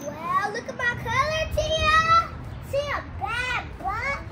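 A young girl's high-pitched voice in several short, sliding phrases with no clear words.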